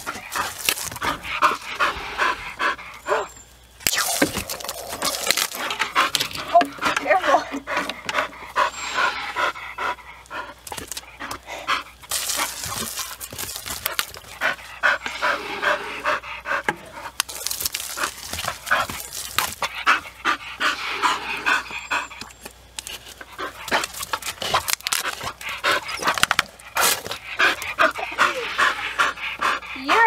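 A bull terrier panting hard in quick rhythmic breaths while it plays, broken several times by a second or two of hissing water spray from a hose wand.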